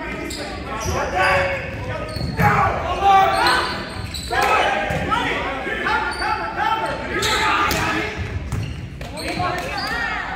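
Players and spectators calling and shouting in a gymnasium during a volleyball rally, with several sharp smacks of the volleyball being hit or landing on the hardwood court.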